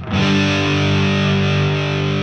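Overdriven electric guitar through a TS9 Tube Screamer into a Marshall JCM2000 amp, with the Xotic Super Clean Buffer's bass boost switched on: one chord struck at the start and left to ring steadily.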